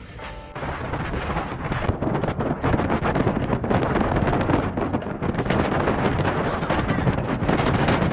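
Strong gusty sea wind buffeting the microphone: a loud rushing rumble that swells and flutters in gusts, setting in suddenly about half a second in after a moment of music.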